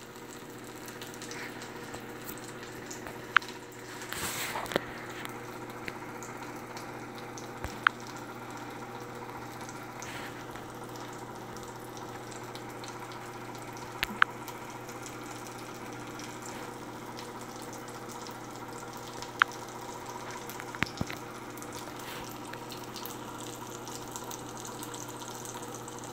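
Steady low background hum and hiss, with a handful of short faint clicks scattered through and a brief swell of hiss about four seconds in.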